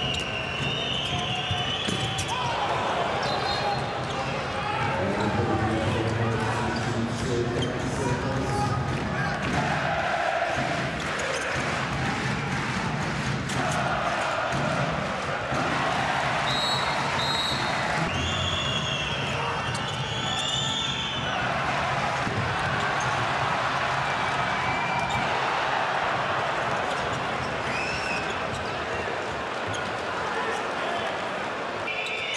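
A handball bouncing on an indoor court during play, over the steady noise of a large crowd of spectators in the hall.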